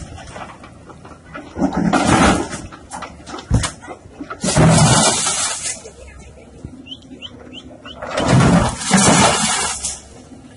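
Concrete blocks and rubble crashing down as a CASE wheeled excavator's bucket knocks down a breeze-block wall. The noise comes in three bursts of about a second each, with a single sharp knock between the first two.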